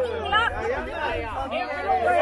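Several people talking at once: overlapping chatter of a small group of adults.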